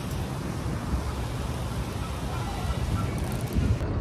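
Wind buffeting the phone's microphone: a steady, gusting rumble and rush.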